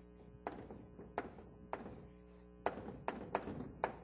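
Irregular sharp taps and knocks of a pen or chalk striking a lecture board as a diagram is drawn, about seven strokes in four seconds, over a steady hum.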